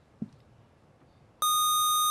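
Quiz-bowl buzzer system sounding a steady, high electronic beep that starts abruptly about a second and a half in: a player has buzzed in to answer.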